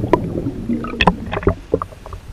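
Muffled water churning against a submerged camera, with several sharp clicks and pops, the loudest about a second in.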